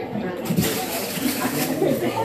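Wrapping paper rustling and tearing, a dense crackly noise from about half a second in until near the end, over guests chatting.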